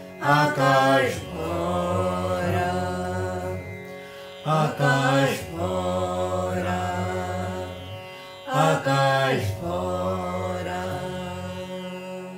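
Indian classical-style vocal music: a man and a boy singing short phrases in turn, with long held notes between them, over a string instrument held across the man's lap. The music fades near the end.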